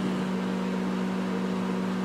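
Microwave oven running: a steady low electrical hum that holds unchanged throughout.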